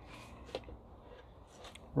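Quiet handling of a wooden cigar box guitar lid as it is set onto the box, with a light wooden tap about half a second in and a couple of fainter clicks later.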